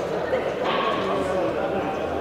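Several people talking in the background, an indistinct murmur of voices.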